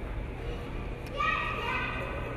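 A child's high-pitched voice, briefly speaking or calling about a second in, over the steady low hum of a large indoor hall.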